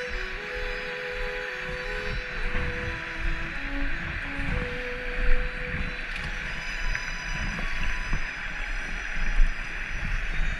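Rushing mountain creek, a steady hiss of fast water over rocks, with soft background music for the first half that fades out about five seconds in. Brief low thumps come and go underneath.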